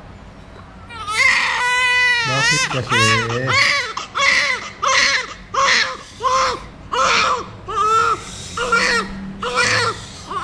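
Newborn baby crying: after about a second of quiet it starts with one long wail, then goes on in short, rhythmic cries about one and a half a second.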